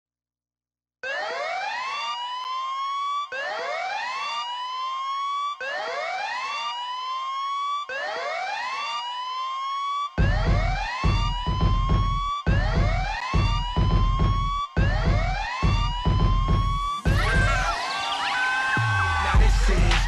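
Hip hop dance-mix intro: a siren-like rising wail repeats about every two seconds, starting about a second in. A heavy bass beat joins about halfway through, and near the end a rising sweep leads into the rap.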